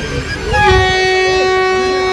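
Narrow-gauge passenger train's horn sounding one long, steady note, starting about half a second in, as the train is about to depart.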